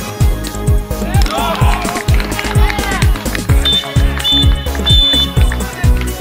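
Upbeat dance music with a steady kick-drum beat and a voice singing over it.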